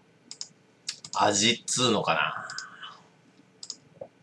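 A man's wordless voice, rising and falling for about two seconds in the middle, with a few light sharp clicks before and after it.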